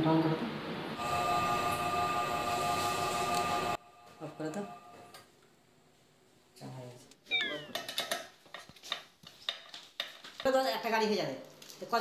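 A cat meowing several times in the second half, short calls that fall in pitch. Before that, a steady hum of several held tones cuts off suddenly about four seconds in.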